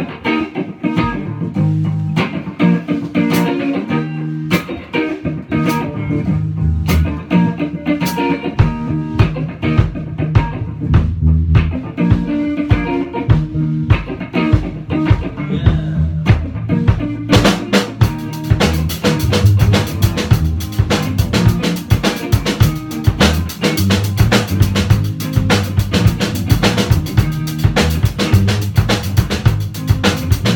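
A small rock band of electric guitar, bass guitar and drum kit playing an instrumental song just after a count-in. Guitar and bass lead at first with sparse drum hits, and about seventeen seconds in the full drum kit with cymbals comes in steadily.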